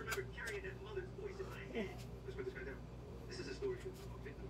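Faint, muffled talk from a television playing in the room, with a couple of short sharp clicks soon after the start.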